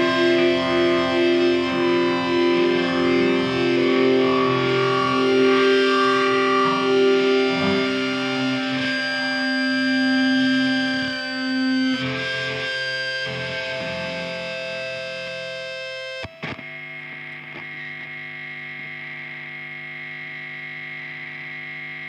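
Closing bars of a metal track: distorted electric guitar chords ring out over long sustained tones, gradually thinning and quietening. About two-thirds of the way through the sound breaks off abruptly into a quieter, steady held chord.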